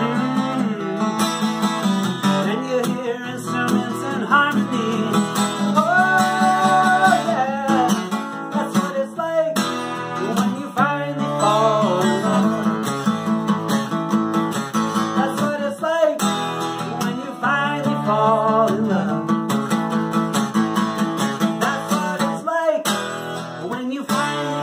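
Steel-string acoustic guitar strummed in steady chords, with a man singing over it.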